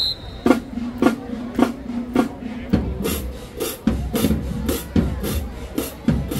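High school marching band starting up: four evenly spaced drum hits about half a second apart over a held low note, then from about three seconds in a quicker drum beat with band tones.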